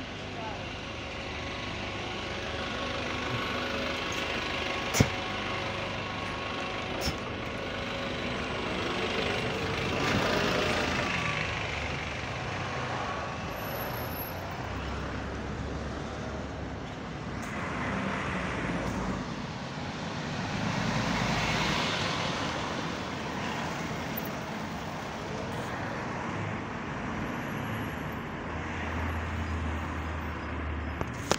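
Hybrid double-decker bus standing at a stop with its engine and motor running steadily, with a sharp click about five seconds in. It pulls away around ten seconds in with a rise in engine and motor sound, followed by passing road traffic.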